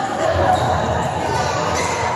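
Crowd chatter and calls echoing in a large indoor badminton hall, with scattered impacts from play on the courts.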